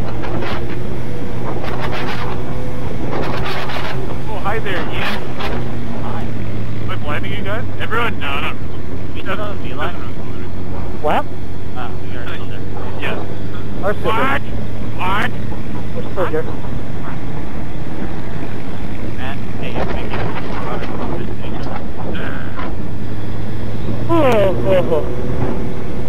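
2005 Suzuki GSX-R1000 inline-four with a full Yoshimura exhaust running at a steady cruise, its engine note holding nearly constant pitch.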